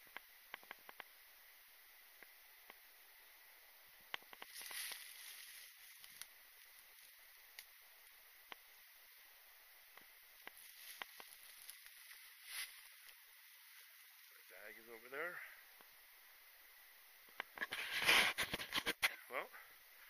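Mostly quiet outdoor air with a faint steady hiss and scattered small clicks and rustles; near the end a louder burst of crackling, footsteps crunching through dry fallen leaves.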